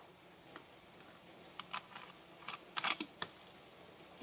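A few faint, scattered clicks and taps of a small plastic bottle and plastic tray being handled, with a short cluster of clicks about three seconds in.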